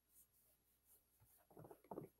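Near silence: quiet room tone, with a few faint, brief sounds in the second half.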